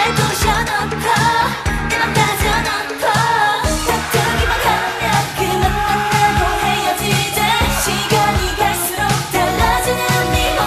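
Korean pop dance song: women's voices singing over a backing track with a steady beat.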